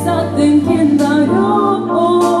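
A female vocalist singing a held, gliding melody line live over sustained keyboard chords and a low bass note, with a few light drum or cymbal hits.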